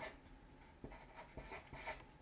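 Felt-tip marker writing on paper: a few faint, short strokes as numbers are written.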